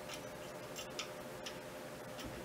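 A few faint, irregular clicks of metal telescope-mount parts being handled and adjusted, over a faint steady hum.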